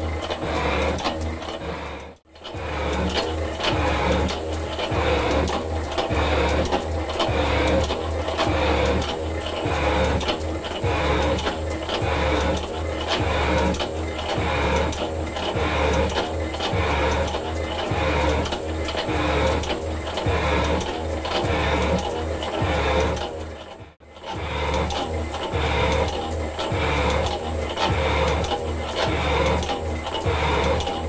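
Metal shaper running, its ram stroking back and forth about once a second as the tool bit planes a cast iron block to width. The rhythm breaks off briefly twice, about two seconds in and near the end.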